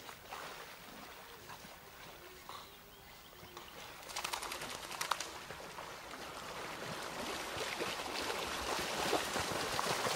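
Water sloshing and splashing around an inflatable ring float as the rider paddles with his hands, with a few short clicks about four to five seconds in and the splashing growing louder toward the end.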